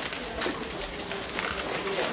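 A pause in a speech: steady room noise with faint, indistinct voices and a few small clicks.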